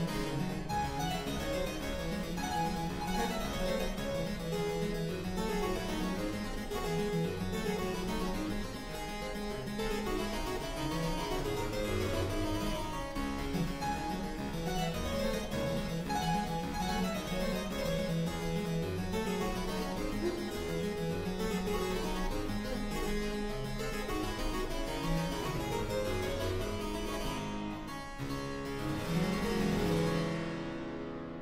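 Solo two-manual harpsichord playing a fast, dense passage of rapid plucked notes. Near the end it strikes a loud chord that rings away.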